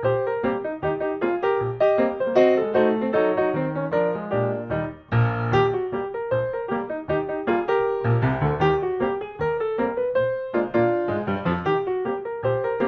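Background piano music, a brisk run of notes, with a brief dip about five seconds in.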